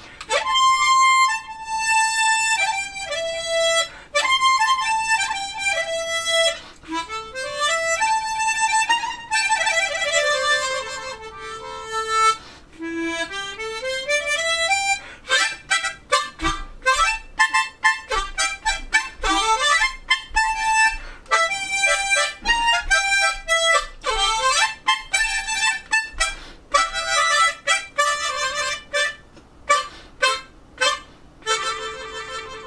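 Tremolo harmonica played solo, a slow melody with held notes and sliding runs in the first half, then short detached notes in a steady rhythm from about halfway through.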